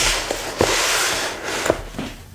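Rustling and handling of a hard-shell transmitter case and its packed contents, with a light knock about half a second in and another near the end.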